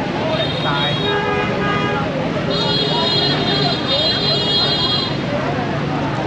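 Busy night street in Hanoi's old town: a steady mix of crowd chatter and traffic. A short vehicle horn sounds about a second in. A high steady tone holds for a couple of seconds in the middle.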